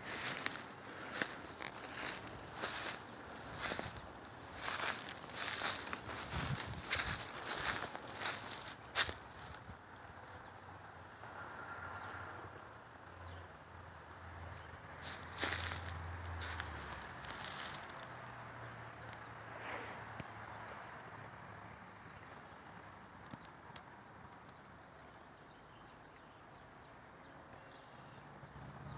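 Footsteps crunching through dry leaf litter and twigs: a steady run of irregular crackly steps for about nine seconds, then a pause, then a few more steps, with quiet woodland around them.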